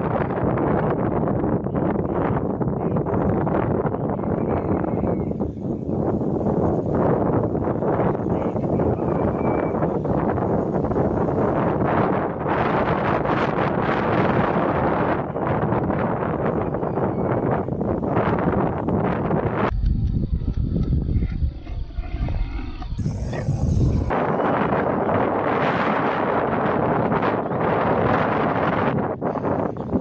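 Wind buffeting an outdoor microphone: a steady, rough rushing noise. It turns abruptly deeper and rumblier for a few seconds past the middle, then returns.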